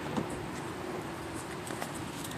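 Low, steady outdoor background noise with a faint click a fraction of a second in.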